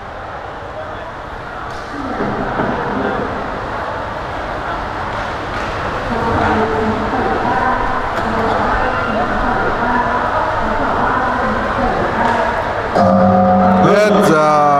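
Arena crowd shouting and cheering, many overlapping voices, growing louder a couple of seconds in. Near the end a loud, steady pitched tone cuts in over the crowd.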